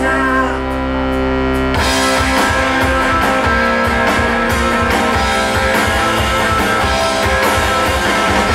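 Live rock band playing an instrumental passage: a held electric guitar chord rings on its own for about two seconds, then the drums and guitar come back in together and drive on at full volume.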